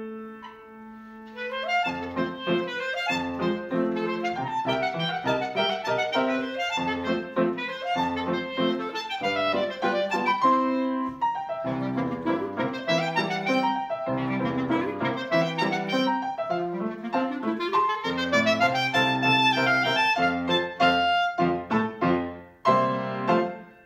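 Clarinet playing a fast, lively melody of quick notes over piano accompaniment, after a held chord at the start, with a rising run of notes near the end.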